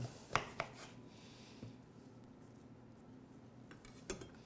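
A chef's knife cutting through a lemon onto a plastic cutting board: three light knocks of the blade on the board in the first second, then quiet, with a couple of faint taps near the end.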